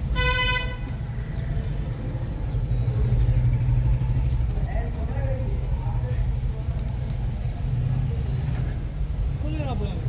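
A vehicle horn toots once, briefly, at the start, over a steady low rumble of motorbike and auto-rickshaw engines in the street.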